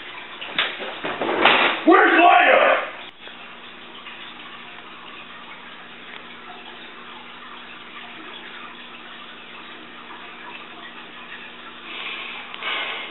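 A loud person's voice with a few sharp knocks for about the first three seconds, cut off suddenly; then a steady faint hiss with a low electrical hum.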